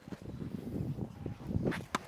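Steady low rumble of outdoor air on the microphone, then near the end a single sharp crack of a tennis racket striking the ball on a child's serve.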